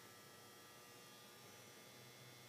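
Near silence: faint steady room tone with a slight hum.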